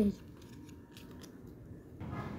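A few faint clicks and rustles of UNO cards being handled: drawn from the draw pile and laid down.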